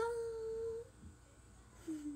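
A young woman's voice humming one steady held note for just under a second, then a short, lower voiced sound near the end.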